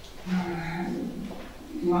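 A person's drawn-out hesitation sound, a held "ehh" at one steady pitch lasting under a second, between phrases of speech.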